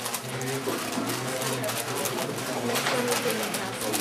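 A 4x4 twisty-puzzle cube being turned rapidly by hand in a speedsolve, its layers clicking and clacking in quick irregular runs. Voices talk in the background.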